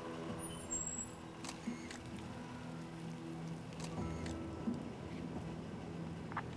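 A Mercedes-Benz car's engine running at low speed as the car rolls slowly in, under a sustained low musical drone. A couple of faint clicks come through, and the low rumble grows about four seconds in.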